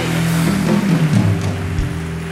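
Live studio band playing a short music cue with heavy, held low notes, over audience applause.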